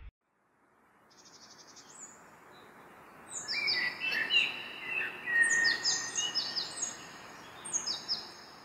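Birds chirping over a soft outdoor hiss: a faint trill at first, then from about three seconds in, many short, high calls that fall in pitch and overlap.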